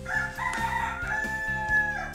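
A rooster crowing once: one long call that steps up in pitch, holds a steady note and breaks off near the end.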